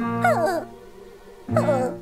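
A cartoon character's voice gives two short whimpering cries that fall in pitch, one near the start and one about a second and a half in, over background music.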